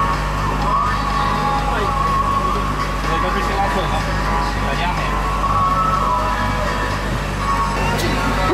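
Boat engine running with a steady low drone, with voices and music over it.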